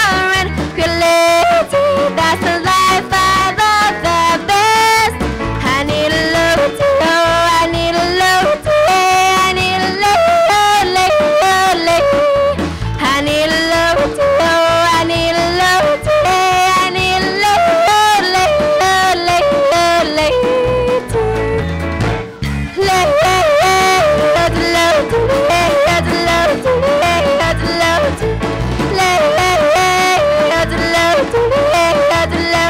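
A young woman yodeling into a microphone, her voice flipping quickly between low and high notes over country-style instrumental accompaniment.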